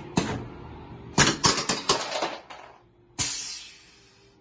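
A series of sharp clicks or snaps: one near the start, five in quick succession about a second in, and a last one near the end with a longer hissing tail that fades away.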